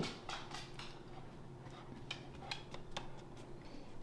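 A dog moving about: faint, scattered light clicks and ticks over a faint steady hum.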